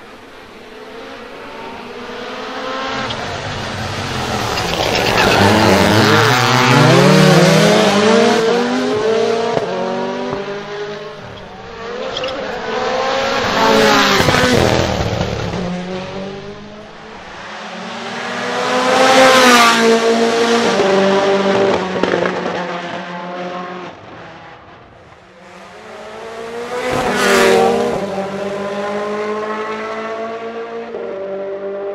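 Rally1 hybrid rally cars at full speed on a tarmac stage, their engines' pitch climbing and dropping through gear changes. There are four loud passes, about 7, 14, 19 and 27 seconds in.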